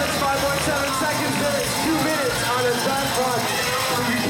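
Many overlapping voices of a crowd chattering in a large, echoing hall, with music playing over the public-address system.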